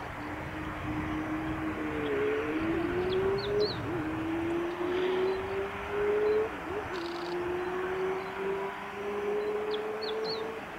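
A distant engine drone whose pitch creeps slowly upward and drops back twice, over a steady background hiss. Faint, short, high bird chirps come about three seconds in and again at the end.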